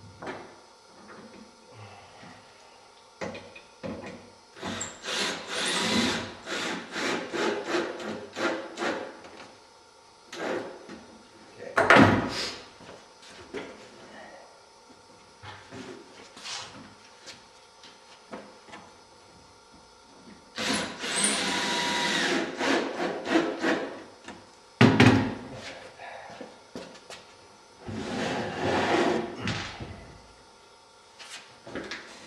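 Woodworking sounds on a plywood-skinned wing frame: several spells of a cordless drill driving screws through batten strips to pull the thin plywood skin down onto the ribs, the longest and steadiest about two-thirds of the way in. Sharp wooden knocks come in between, the loudest about midway and just after the long drill spell.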